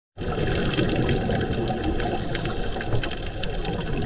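Underwater sound through a dive camera: a steady hiss with many scattered crackling clicks, and the bubbling of a scuba diver's exhaled air from the regulator.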